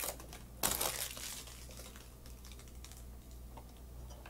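Protective plastic film being peeled off a new Akai MPK Mini 3 keyboard controller: a short crinkle a little over half a second in, then faint clicks and rustles of the plastic being handled.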